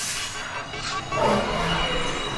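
Dark-ride soundtrack of dramatic music under a rushing noise effect, which swells a little past a second in.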